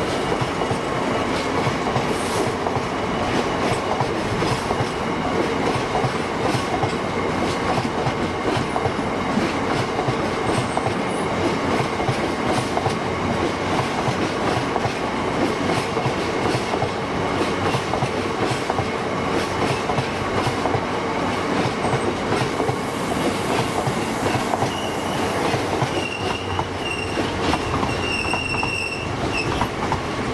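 Freight train of open box wagons rolling past at speed: a steady rumble of wheels on rail with repeated clickety-clack knocks as the wheelsets pass over rail joints. Near the end come a few short, high-pitched wheel squeals.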